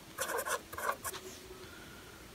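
A pen writing by hand on paper, in several short scratchy strokes during the first second.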